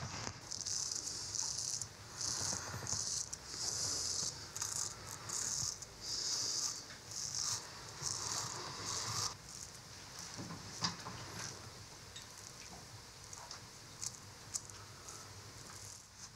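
Plastic razor scraping through shaving foam and stubble on a man's cheek, a series of short strokes about one a second; after about nine seconds the strokes stop and only a few faint clicks are left.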